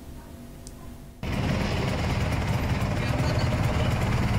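After a quiet first second, a small motorcycle engine runs steadily close by, with a fast, even mechanical pulsing.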